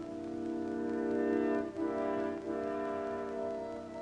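Orchestral theme music: a low brass chord, led by French horns, held steadily and shifting notes twice around the middle.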